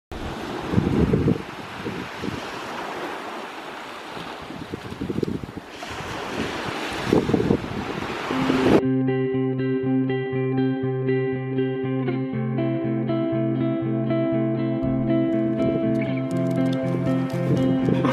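Small waves washing onto a sandy shore, with wind buffeting the microphone in gusts. About nine seconds in this cuts off suddenly and instrumental indie rock-pop music with a steady pulsing beat takes over.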